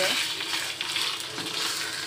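Chicken pieces in curry paste sizzling gently in a wok over a low flame while a wooden spatula stirs and scrapes through them. The paste is being fried until its oil separates out.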